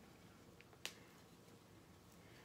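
Near silence, broken by one short sharp click a little under a second in, with a fainter tick just before it: small plastic Lego pieces knocking together as the set is handled.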